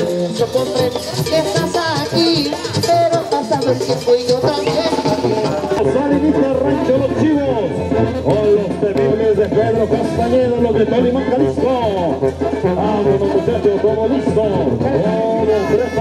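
Mexican banda-style brass band music playing steadily, with voices underneath.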